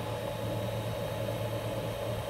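A steady low hum with an even hiss over it, unchanging throughout, from the bench setup while the CB amplifier sits unkeyed between test transmissions.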